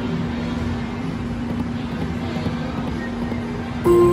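Video slot machine playing its electronic music and reel sounds over a steady hum, with a louder electronic chime near the end as the reels stop on a small win.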